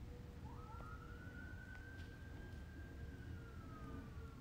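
Faint siren wail: a tone that rises about half a second in, holds, then slowly falls, over a low background rumble.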